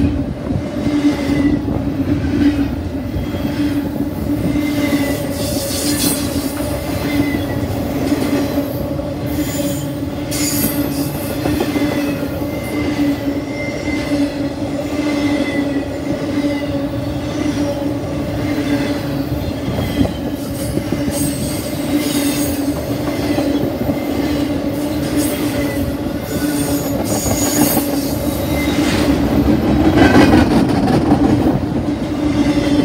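Double-stack intermodal freight cars rolling past: a steady rumble and clatter of steel wheels on rail, with a continuous low hum and several brief high-pitched wheel squeals.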